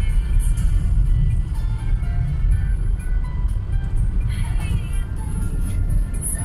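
Steady low road and engine rumble inside a moving car's cabin, with music playing faintly over it.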